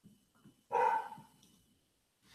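A single short dog bark, sharp at the start and fading quickly, about two-thirds of a second in.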